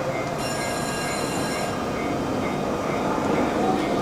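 A stationary JR East E231-series electric commuter train standing at a station platform with its onboard equipment running: a steady hum and hiss, with a set of high, steady whining tones sounding for about a second shortly after the start.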